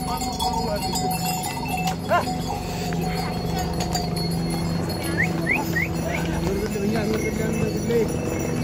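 Pack ponies and mules passing along a stone-paved mountain trail: hooves clopping and harness bells jingling amid the chatter of a crowd of trekkers, with three short high chirps about five seconds in.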